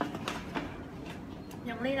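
A hand rummaging through paper cards inside a cardboard box, with a few faint clicks and light rustling; near the end a woman starts speaking with a laugh.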